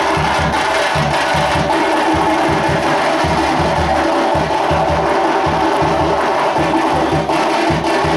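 Drums played in a fast, steady, even beat, with a dense clatter of percussion over it.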